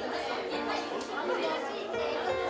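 Hubbub of many children talking over one another.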